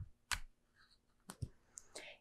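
A few faint, sharp clicks over quiet room tone: one about a third of a second in, then a quick pair about a second and a half in.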